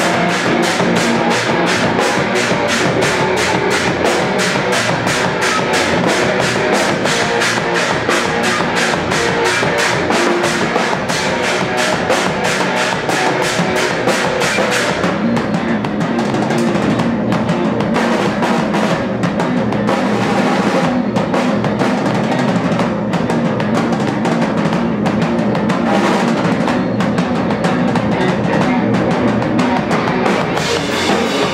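Loud live rock band with electric guitar, electric bass and drum kit playing an instrumental passage. Over the first half the drums keep up a fast, even pattern of hits with a bright cymbal wash. About halfway through the treble thins and the hits become sparser while the guitars and bass carry on.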